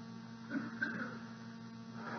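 Steady electrical mains hum on an old tape recording, with a faint, brief murmur about half a second in.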